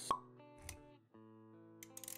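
Intro music with sound effects: a sharp plop right at the start, a low thud just past half a second, the music dropping out for a moment about a second in and coming back on a new chord, then a run of quick clicks near the end.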